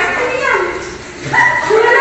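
Women's high-pitched excited cries and laughter: two drawn-out exclamations, one right at the start and a second, louder one a little past halfway.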